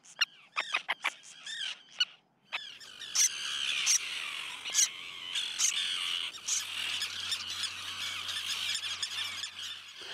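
A nesting colony of common terns calling: short, harsh, repeated calls from many birds. After a few separate calls there is a brief break about two seconds in, then a dense chorus of overlapping calls.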